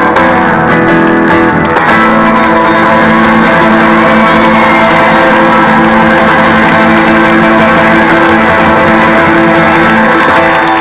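Three acoustic guitars, one of them nylon-string, playing live through a loud PA: a few changing chords, then from about two seconds in one chord strummed fast and held at a steady level, the closing chord of the song.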